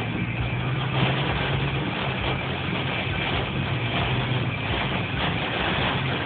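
Rain hitting a car's windshield and roof, heard from inside the cabin as a steady wash of noise over a low engine hum.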